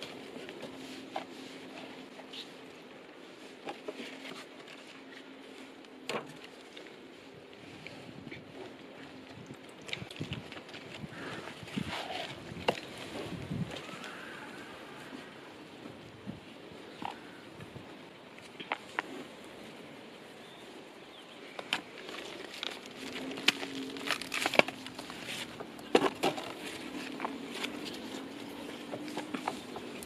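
Hands pressing and working compost in a large plastic tub: soft rustling and crackling of the soil, with scattered sharp clicks and knocks.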